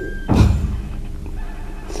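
A short, loud burst of laughter about half a second in.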